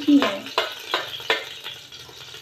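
Chopped nuts and dried coconut frying in ghee in an aluminium pot, with a low sizzle. Over it come a run of sharp taps and scrapes about three a second as the nuts are scraped off a plate into the pot.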